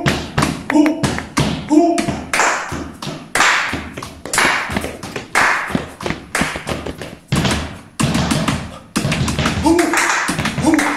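Body percussion ensemble playing a joropo rhythm in 3/8: fast hand claps, chest slaps and foot stamps, with heavy accented strokes about once a second. Short chanted vocal syllables sound over the pattern near the start and again near the end.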